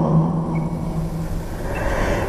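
The tail of a long chanted note from the performers' voices, held on one low pitch and fading out, over a low rumble.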